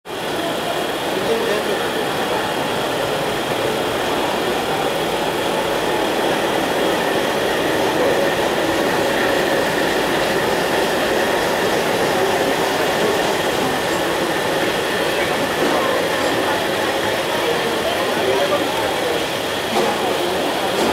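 Steady running noise of a passenger train heard from an open coach door as it rolls into a station: wheels rumbling and rattling over the rails, with a faint steady whine.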